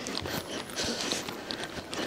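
A horse trotting on the sand footing of an indoor arena: faint, soft, dull hoofbeats with some hiss between them.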